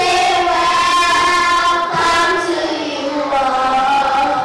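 Children singing a slow song into handheld microphones, holding long notes of about a second each and gliding between them.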